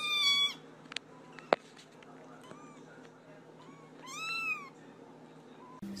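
Small kittens meowing in high, thin voices: one meow right at the start, a few faint ones in the middle, and a longer meow that rises and falls about four seconds in. Two sharp clicks sound about a second and a second and a half in.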